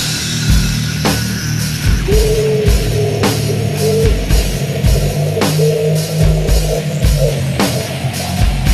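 Death metal music: distorted guitars and bass over a drum kit, with repeated kick drum and crashing cymbal hits throughout.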